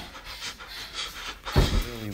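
A person panting heavily in short breaths. About one and a half seconds in, a loud strained vocal cry starts and carries on.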